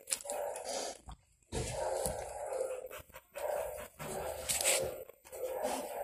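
A dog making sounds in a series of bursts about a second long, with short gaps between them.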